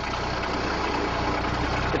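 Kubota tractor's diesel engine running steadily under way, a low, even drone.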